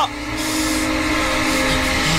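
Dramatic background music holding one long sustained chord, with a soft hiss in about the first second.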